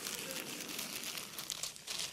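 Light crinkling of dried seaweed being handled in the hands.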